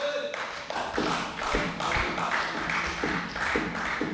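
Applause from a group of people clapping in a plenary chamber, a dense patter of many hands.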